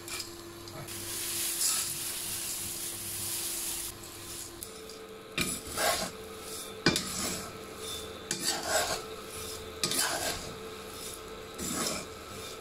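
Pumpkin seeds pour in a hissing rush into hot salt in a stainless steel wok. A metal spatula then scrapes and stirs the seeds through the salt in irregular strokes as they dry-roast. A faint steady whine from the induction cooker runs underneath.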